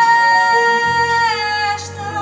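A woman's voice sings one long held note with a light vibrato, sliding down in pitch partway through, over a jazz band accompaniment; a low double bass note comes in just under a second in.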